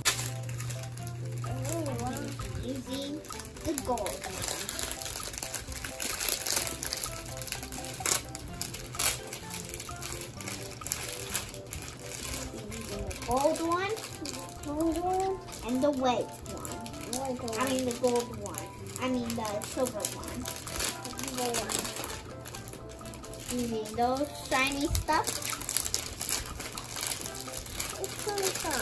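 Clear plastic packaging rustling and crinkling as sheets of glitter craft paper are pulled out of their bags. Background music and children's voices run underneath.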